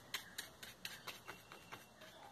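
Faint irregular ticks, about four a second, of a paintbrush stroking and dabbing paint onto a thin plastic leaf cut from a PET bottle.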